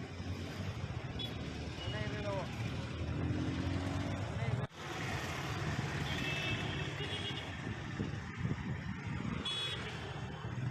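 Outdoor street ambience: road traffic running with indistinct voices, broken by an abrupt cut about halfway through, and a short high-pitched beep near the end.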